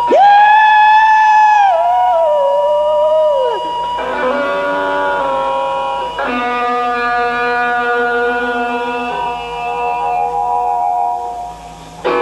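Live blues-rock trio music: an electric guitar holds long, sustained notes, bending downward in pitch over the first few seconds, then a long held note that wavers in pitch toward the end.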